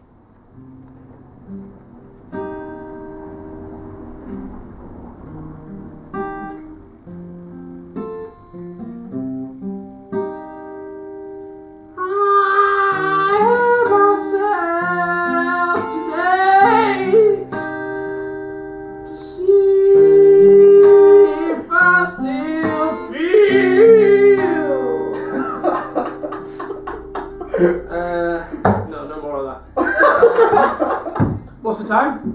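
Acoustic guitar played alone, quiet plucked notes, then a man starts singing over it about twelve seconds in, much louder, with one long held note near the middle.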